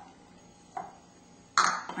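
Kitchen utensils and a cooking pot clinking: a faint knock about three quarters of a second in, then a louder clatter near the end.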